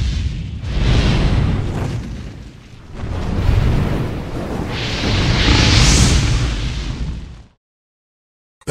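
Explosion sound effects for an animated logo intro: three swelling booms with a low rumble, about a second, three and a half seconds and six seconds in, cutting off suddenly shortly before the end.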